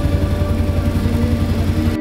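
Auto-rickshaw engine running with a loud, fast low throb, heard from inside the rickshaw's cabin.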